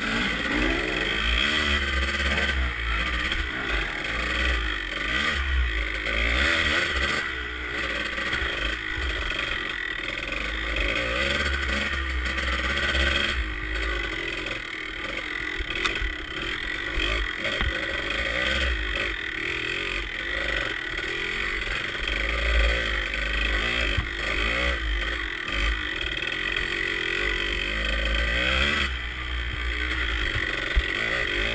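Kawasaki KDX two-stroke dirt bike engine running under load, its pitch rising and falling continually as the throttle is worked over rough, muddy trail, heard from the rider's own position.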